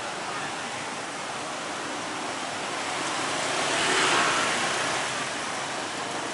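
Street traffic noise with a vehicle passing close by: a hiss of engine and tyres that swells to its loudest about four seconds in and then fades.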